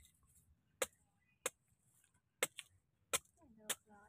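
Machete chopping into a coconut's husk: five sharp strikes, irregularly spaced about half a second to a second apart.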